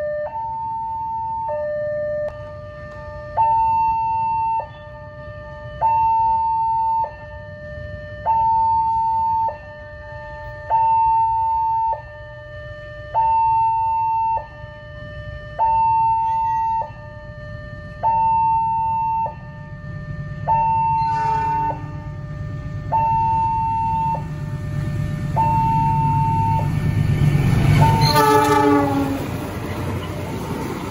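Railway level-crossing electronic warning siren sounding a tinny two-tone alarm, a higher and a lower tone swapping about every second. A train's rumble grows louder as it approaches. The locomotive's horn sounds faintly about two-thirds of the way in, then loudly and briefly near the end.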